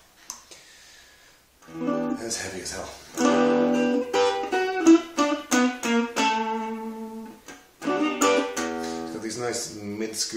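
Stratocaster-style electric guitar played through an old Marshall Reverb 12 transistor combo amp. The playing starts about two seconds in, with a brief pause near eight seconds.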